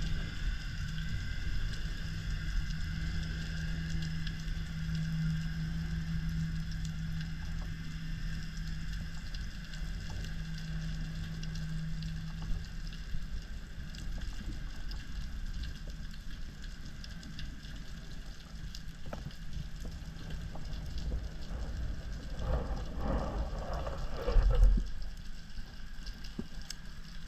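Underwater ambience picked up by a GoPro camera in the sea: a low steady hum for the first half and faint, scattered crackling throughout. A louder rushing surge swells up near the end and dies away just before the close.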